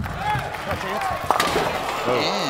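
Bowling alley crowd cheering and shouting as pins clatter on a spare attempt, with a couple of sharp knocks a little over a second in.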